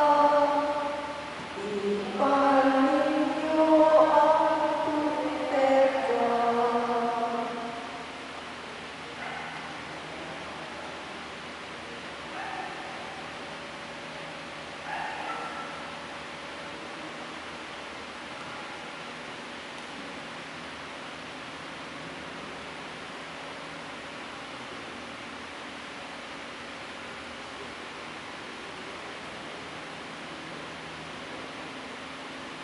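Voices singing the entrance hymn, the last phrases ending about eight seconds in. After that only a steady low hiss of room noise, with a few faint short sounds.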